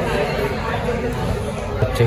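Indistinct chatter of several people talking at once in a busy coffee shop, with no single clear voice.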